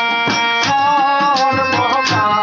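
Live Bengali folk music: tabla strokes and a jingle tambourine keep a steady beat under a held, wavering melody line.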